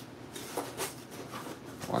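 Stacks of paper banknotes being handled and set into a cardboard box: faint rustling with a few soft taps.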